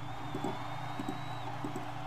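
Computer mouse clicks, in quick press-and-release pairs about three times over two seconds, as points are set with a selection tool. Under them runs a steady electrical hum with a faint high whine.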